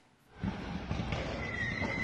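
Street noise from a phone video, starting about half a second in: a dense, rough din of cars, with a thin high tone that holds for about half a second near the end.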